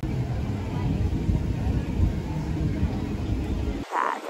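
Low, irregular rumbling noise with faint voices in the background, cutting off suddenly near the end.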